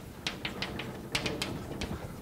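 Chalk writing on a blackboard: a run of short, irregular taps as the chalk strikes and lifts from the board.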